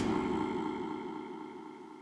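Electronic music: a held synth tone that fades slowly away after a sharp hit.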